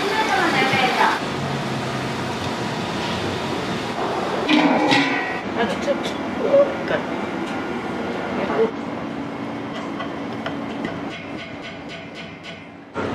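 Commercial kitchen noise: a steady rumble of running equipment, with brief voices near the start and about four and a half seconds in, and scattered clinks of metal pots and utensils.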